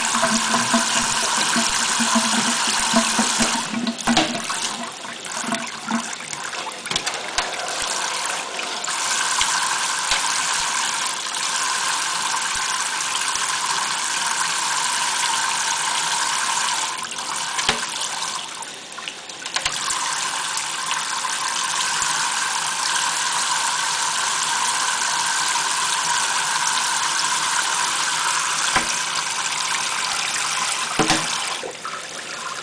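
Kitchen faucet spray running steadily, its streams splashing onto a bathing African grey parrot and the stainless steel sink. The splashing briefly drops and changes twice, about four seconds in and again about seventeen seconds in.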